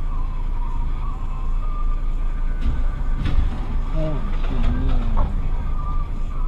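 Steady low engine rumble heard from inside a car waiting in traffic, with a short, sharp crash about three seconds in as a vehicle knocks down a lamp post across the junction.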